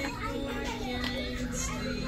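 Indistinct childlike voices over background music, with a steady low hum underneath.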